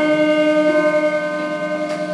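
The final chord of a live rock song ringing on after the drums stop: several steady tones held on the amplified instruments, slowly fading.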